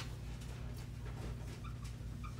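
Faint squeaks of a felt-tip marker writing on a whiteboard, a few short squeaks near the end, over a steady low hum.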